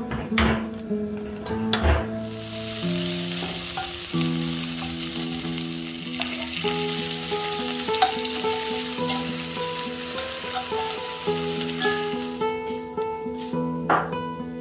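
Onions and chopped tomatoes sizzling as they fry in an enamelled pan, being stirred. The sizzle comes in about two seconds in, after a few clicks, and stops shortly before the end, over soft background music.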